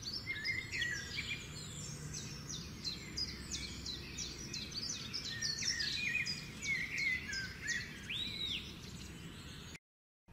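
Several birds chirping and singing, a dense run of quick high chirps and sweeps over a low, steady background noise, cutting off suddenly near the end.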